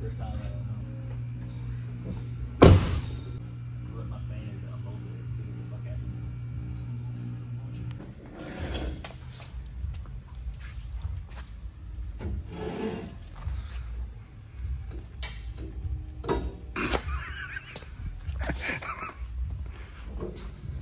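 A vehicle door shut with a loud slam about two and a half seconds in, over a steady low hum that stops about eight seconds in. After that come scattered scrapes and clunks as the arms of a two-post shop lift are swung into place under a pickup.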